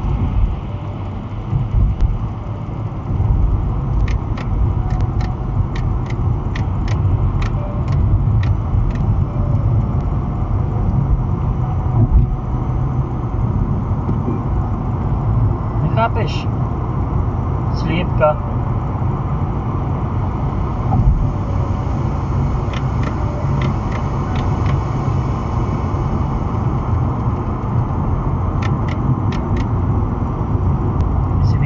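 Steady in-cabin road noise of a car driving at motorway speed: a low tyre and engine rumble. Light ticks come and go through it.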